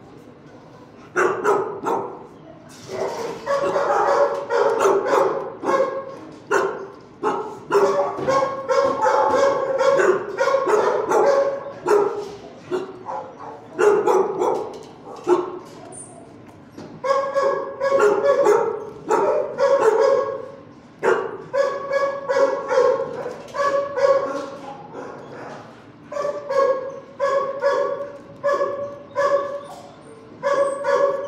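Kennelled shelter dogs barking over and over, starting about a second in, with brief lulls between runs of barks.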